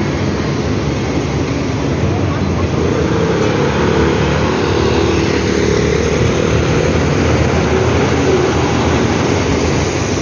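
Steady vehicle noise of busy traffic, with voices in the background.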